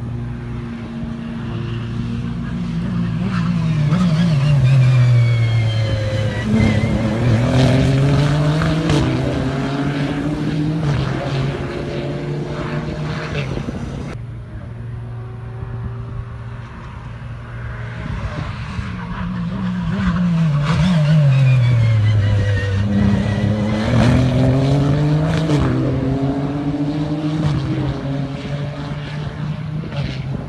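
Race car passing at speed twice, its engine note falling sharply in pitch as it goes by and then rising in steps as it pulls away through the gears, over a steady low engine hum.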